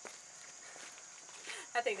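Quiet outdoor ambience with a faint, steady high-pitched insect drone, with a woman's voice starting near the end.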